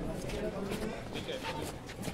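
Murmur of a large outdoor crowd, with faint, indistinct voices over a steady background hum.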